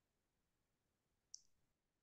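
Near silence with a single short, high click about one and a half seconds in.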